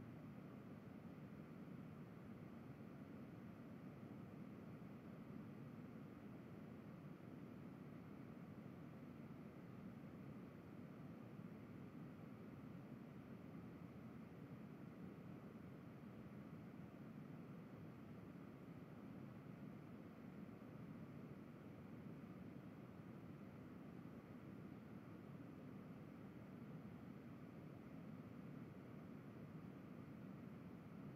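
Near silence: a steady, faint background hiss with no other sounds.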